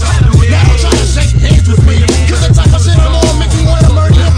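A 1990s hip hop track with a rapped vocal over a deep, heavy bassline and a steady drum beat.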